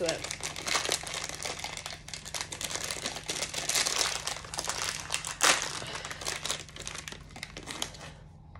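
A crinkly plastic chocolate wrapper being worked open by hand: continuous irregular crackling and rustling, with the loudest crackle about five and a half seconds in.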